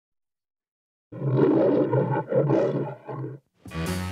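A lion roaring as part of the MGM studio logo, in three roars: two long ones and a short last one. Music begins just after.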